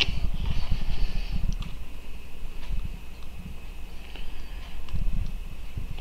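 Low rubbing and handling noise from hands working a small diecast toy-car chassis and its wheels, with a few faint clicks.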